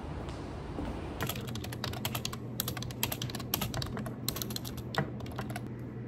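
Typing on a computer keyboard: irregular runs of key clicks that start about a second in and stop shortly before the end, over a low steady hum.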